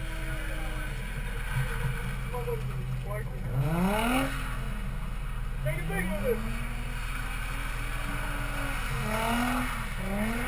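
A drift car's engine revving up and falling back several times as it is driven across a wet lot: one short rise about three and a half seconds in, a long rise and fall in the second half, and another near the end. Under it is the steady low hum of a nearby idling engine.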